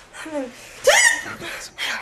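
A woman's short wordless vocal sounds, grunts and a high cry, as she strains to break free of a man holding her arms. There are three brief bursts, the loudest a rising-then-falling cry about a second in.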